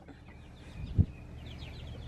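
Young chickens cheeping softly in a run of short high calls, with a single dull thump about halfway through.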